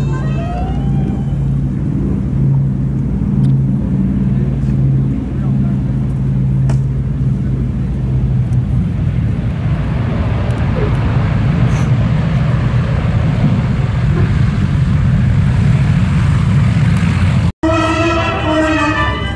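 Boeing B-29 Superfortress's four piston radial engines droning steadily on the landing approach. From about nine seconds in, a louder, rougher rushing noise comes in as it touches down and rolls along the wet runway. The sound cuts off abruptly just before the end.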